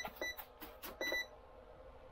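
Light clicks and taps of the foam model jet's plastic canopy hatch being handled and fitted, with a few short high electronic beeps in the first second or so. After that only faint room noise.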